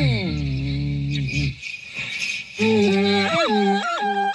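A woman's voice vocalising without words: a slide down into a low, rough, buzzy tone held for about a second, a short pause, then quick yodel-like flips between pitches.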